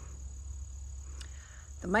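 Steady high-pitched chorus of crickets, under a low rumble of wind on the microphone or handling noise, with a single short click about a second in. A voice starts speaking right at the end.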